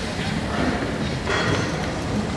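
Indistinct voices talking away from the microphone, over the steady background noise of a large room.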